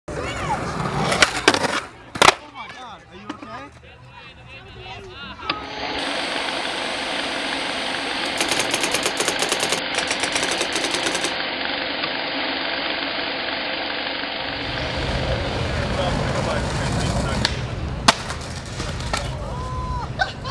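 Skateboard sounds: several sharp board impacts in the first two seconds and a single crack near the end, with a long stretch of steady noise in between.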